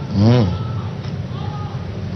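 A man's voice giving one short, drawn-out syllable a fraction of a second in, over a steady low hum, with faint steady tones in the middle.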